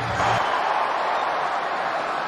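Steady stadium crowd noise from the football crowd, with no commentary over it.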